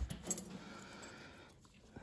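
A few light metallic clicks of steel surgical instruments being handled, one sharp click right at the start and a couple of fainter ones just after, then only faint background hiss.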